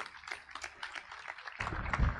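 Audience applauding with irregular hand claps after a speech. Near the end a louder low-pitched sound comes in underneath.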